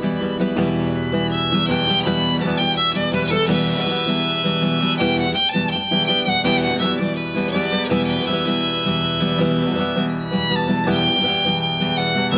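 A violin playing a bowed melody over a classical guitar's fingerpicked accompaniment. This is an instrumental violin and guitar duet performed live, with Spanish-style guitar accompaniment.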